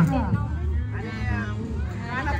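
Several people's voices over background music, with a high, wavering voice among them; a sung note falls away right at the start.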